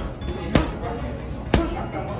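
Boxing gloves punching a heavy bag: two hard thuds about a second apart, over background music.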